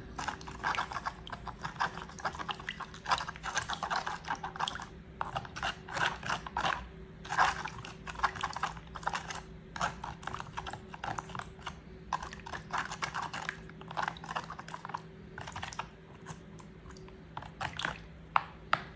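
Fingers stirring potassium chloride salt into water in a plastic food container to dissolve it, with irregular small clicks and scrapes of the grains and fingertips against the plastic. A faint steady hum runs underneath.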